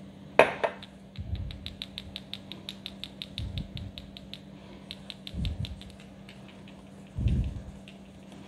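Small metal mesh strainer being tapped to sift paprika powder onto the tzatziki: a sharp tap about half a second in, then a quick run of light ticks, about seven a second, that thins out after a few seconds, with a few dull low bumps from handling.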